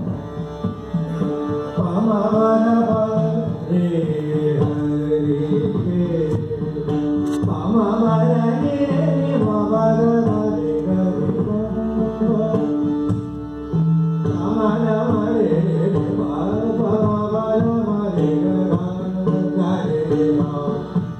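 Live Indian devotional song: a voice singing melodic phrases over held accompanying notes, with tabla.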